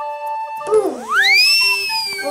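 Background music with a magic-wand sound effect. About two-thirds of a second in, a gliding tone dips, then sweeps steeply upward and slowly slides back down.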